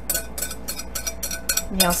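Wire whisk clinking and scraping against a clear bowl as the last of the dressing is scraped out, a quick series of sharp taps with a faint ring. A spoken word comes at the very end.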